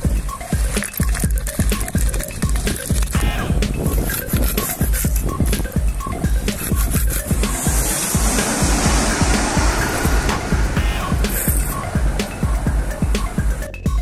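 Background music with a steady beat, with a hissing swell from about eight to eleven seconds in.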